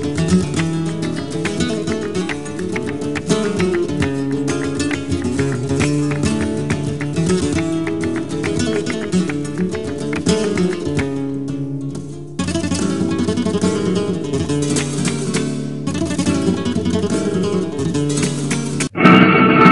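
Flamenco guitar playing an instrumental passage of plucked notes and strummed chords, with no singing.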